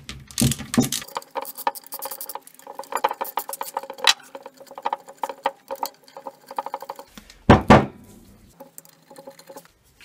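A socket ratchet clicks quickly and steadily, backing out the 8 mm through-bolts of the alternator housing. A louder knock comes about half a second in and another about 7.5 seconds in.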